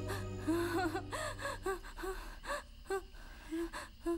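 A boy gasping and sobbing in short, breathy catches, several times over, sounding distressed. A held music chord fades out in the first couple of seconds.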